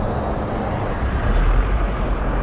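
Low rumbling background noise with no clear tone, swelling louder a little past halfway through.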